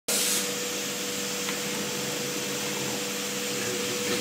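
Entry-level Foliant laminating machine running as a printed sheet feeds through its rollers: a steady whirring hum with a constant mid-pitched whine over a hiss of air.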